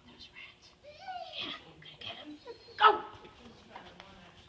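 A dog whining with gliding, high calls about a second in, then one sharp bark near three seconds, the loudest sound here.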